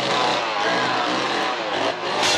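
Two-stroke chainsaw engine running at high revs, its pitch wavering.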